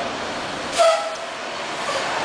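Steady road noise inside a moving car, broken about a second in by one short, level-pitched horn toot.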